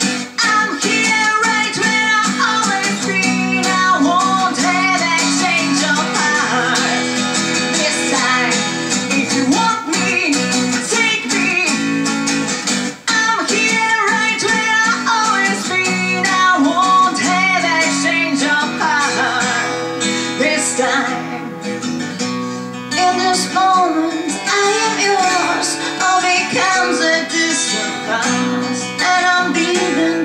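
Live acoustic guitar being strummed while a woman sings over it, with her voice rising and falling in long sung lines. The music drops out for a moment about thirteen seconds in.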